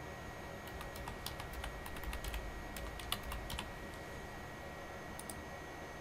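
Typing on a computer keyboard: a quick run of keystrokes for about three seconds, then one more short click near the end.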